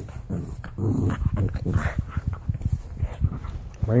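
Pug puppy making a string of short, rough vocal noises while playing, mixed with scuffling and clicks.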